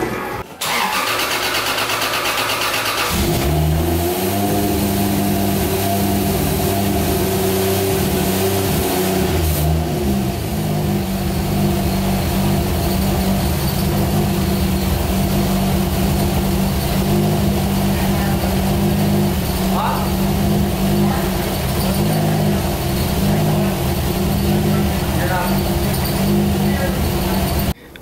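A Toyota Supra's turbocharged 2JZ straight-six engine is started. It cranks briefly, catches about three seconds in, and its revs rise and waver before it settles into a steady idle about ten seconds in.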